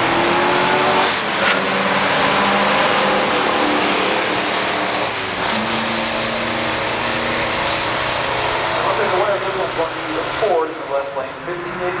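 Two V8 muscle cars, a 1972 Ford Gran Torino Sport with a four-speed manual and a 1962 Chevrolet Corvette, accelerating hard side by side down a drag strip from the start line, their engines running at full throttle through the gears as they pull away.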